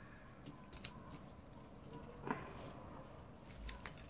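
A few faint clicks and light handling noise from small CPU water-cooler mounting brackets being fitted together by hand, about a second in, midway through and near the end.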